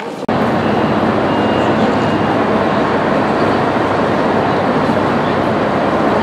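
Loud, steady din of a railway station train hall, with trains at the platforms, starting abruptly about a quarter second in. A faint high whine sounds through the first couple of seconds.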